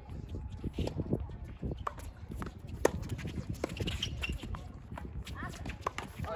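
Doubles tennis rally on a hard court: a run of sharp racket-on-ball hits and players' footsteps, with the loudest hit about three seconds in.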